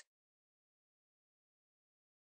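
Silence: a digital gap between narration lines, with no sound at all.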